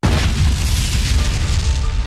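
A deep, sustained rumbling boom with a noisy hiss and no tune, starting abruptly after a momentary cut.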